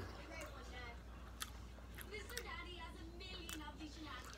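Quiet chewing of a mouthful of food, with a few faint sharp clicks, the clearest about a second and a half in, and a faint voice in the background.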